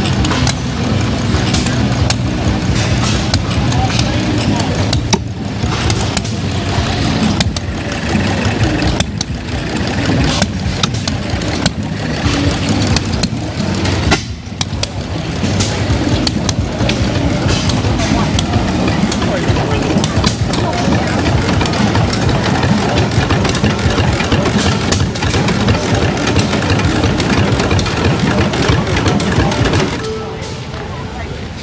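Model flywheel gas engines running together, a loud, dense clatter of irregular sharp pops.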